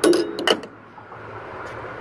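Two sharp metallic clicks about half a second apart from a spring-loaded metal toggle clamp being latched onto a stowed wheelchair van ramp, the clamp that holds the ramp so it doesn't rattle.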